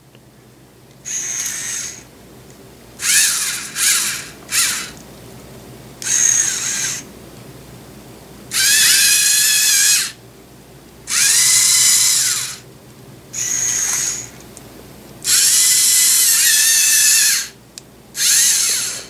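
Small electric servo motors of a LEGO Mindstorms EV3 GRIPP3R robot whirring in about seven separate bursts as it is driven by infrared remote. Each burst rises in pitch as the motor spins up and falls as it stops. The longest and loudest bursts come in the second half.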